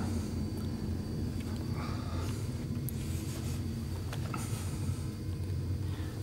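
A steady low hum, with a few faint scuffs and rustles over it.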